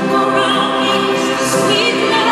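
Live pop song with long held sung notes over choir-like backing voices, a note wavering near the end.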